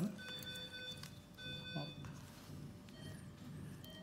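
Intermittent electronic alarm tones from operating-theatre equipment, sounding at several fixed pitches at once: two longer tones in the first two seconds, then fainter short beeps. A brief murmur of voice is heard partway through.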